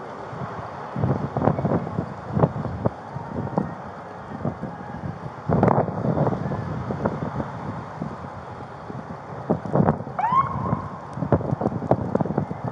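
Body-worn camera's microphone picking up irregular knocks and rustles of clothing and movement as the wearer turns and walks, over wind noise on the microphone. About ten seconds in, a short tone rises and then holds briefly.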